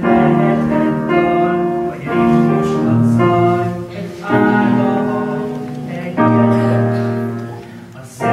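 Choir singing slow, held chords a cappella-style, a new chord starting every second or two.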